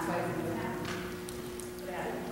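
Indistinct speech in a large, echoing hall, too faint to make out, over a steady electrical hum.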